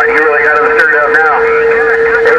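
Received transmission from the HR2510 radio's speaker: a thin, garbled voice over a steady high whistle, the whistle a heterodyne from another carrier on the channel.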